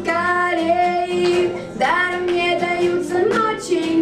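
Girls singing a song together into microphones, in long held notes, with an acoustic guitar strummed underneath.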